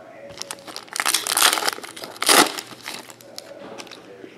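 Foil wrapper of a 2015/16 Upper Deck Artifacts hockey card pack crinkling as it is torn open, in two main bursts, about a second in and again just past two seconds.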